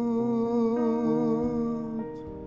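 A man's voice humming one long wordless note with a wavering vibrato, over soft blues piano chords that change underneath it. The voice fades out near the end.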